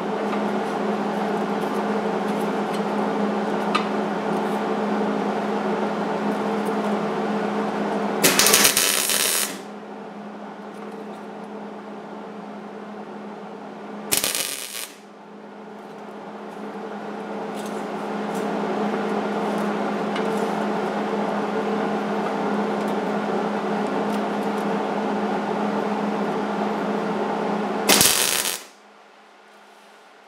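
MIG welder laying tack welds on a sheet-steel fan shroud: three short crackling arc bursts, about 8 s in, about 14 s in and near the end, over a steady machine hum that eases off for several seconds after the first tack.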